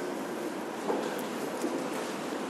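Quiet room background: a steady faint hiss with a few brief, faint low tones in the middle.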